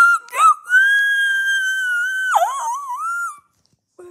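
A child howling like a dog in a high voice: a short call, then one long steady howl that drops and wavers near the end before stopping.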